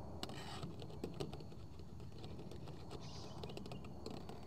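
Faint, scattered light clicks and taps of plastic on plastic as a pen-type pH meter's probe is rinsed in a plastic gallon jug of distilled water.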